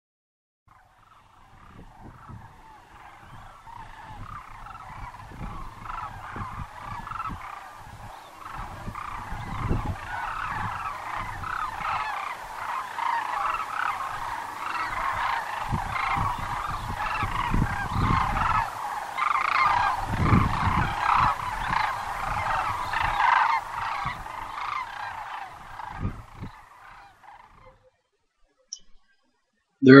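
A large flock of sandhill cranes calling together, many calls overlapping in a dense chorus that fades in, builds to its loudest past the middle and fades away shortly before the end. A few low rumbles sound underneath.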